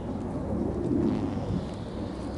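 Wind buffeting the microphone of a small camera carried aloft on a kite line: a rough low rumble that swells in a gust about a second in.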